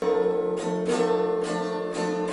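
A small guitar played by a young child: a steady chord that starts suddenly and rings on, struck again three or four times.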